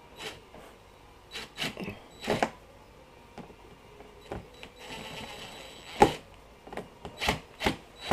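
Cordless drill driving a screw through a fire-hose hinge strap into a plastic cooler lid, in short starts with scattered clicks and knocks and a brief steadier run of the motor about halfway through, ending in a sharp click. The screw is fighting and hard to start.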